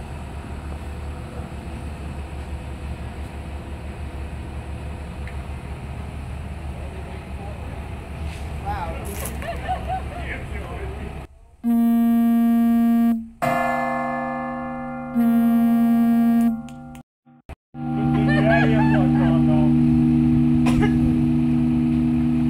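A low engine rumble with faint voices, then about halfway through a large bronze church bell is struck several times. Each strike rings out loud and long, and the last ring carries on to the end under voices.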